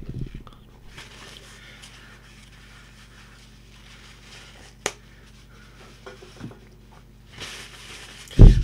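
Quiet room with a steady low electrical hum, faint rustling and knocks from handling in the first half-second, and one sharp click about five seconds in.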